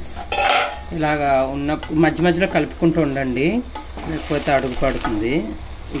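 A wooden spoon stirring and turning cooked biryani rice in a pot, scraping against the pan, with a sharp scrape about half a second in.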